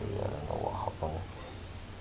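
A man's voice murmuring low and wordless for about the first second, like a thinking hum or mumble, then only faint steady background hiss.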